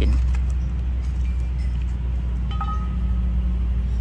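A steady low rumble, with a few faint clicks and light metallic rattling as a tape measure is pulled out and handled.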